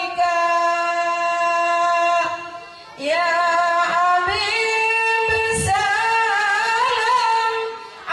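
A woman singing unaccompanied through a microphone in an ornamented devotional style. She holds one long steady note, breaks off for a breath, then sings a longer phrase with wavering melismatic turns. There are a couple of low thumps near the middle.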